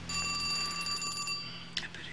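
Telephone ringing: one ring of several steady bell tones lasting about a second and a half, followed by a sharp click.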